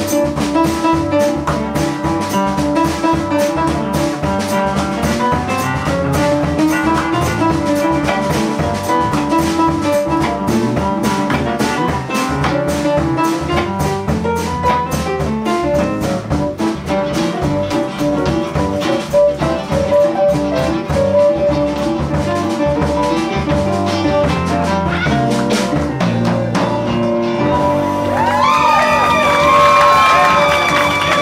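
Live band music led by an upright piano, with drums and guitar, playing a steady rhythmic passage that grows a little louder near the end.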